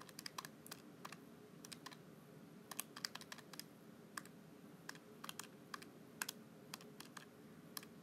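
Faint, irregular key presses: a run of short clicks as a calculation is keyed in to solve for x.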